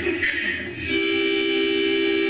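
Harmonica blown in a long held chord, starting about a second in.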